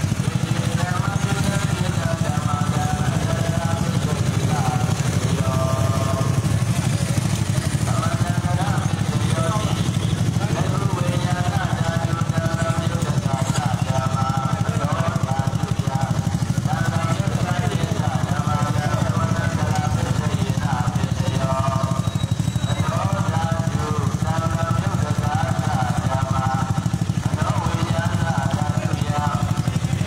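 Motorcycle engine running steadily close by, a continuous low drone, with people's voices calling out in short phrases every few seconds over it.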